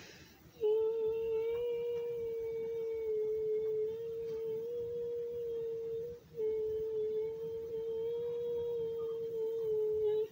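A person humming two long, held notes on the same fairly high pitch, the first lasting about five seconds and the second about four, with a short breath-like break about six seconds in.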